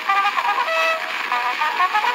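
Cornet solo playing a quick run of notes in a polka, on an early acoustic recording that has no bass.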